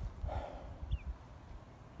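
Quiet outdoor moment: an uneven low rumble of microphone handling and footfalls on dry leaf litter, a short breathy puff about half a second in, and a faint brief high chirp near one second.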